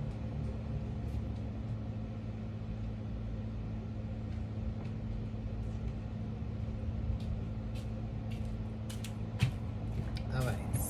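Steady low mechanical hum, like a running household appliance, with a few light clicks and a single knock near the end.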